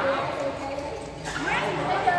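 Voices of people talking and calling out in a large indoor badminton hall, with the room's echo.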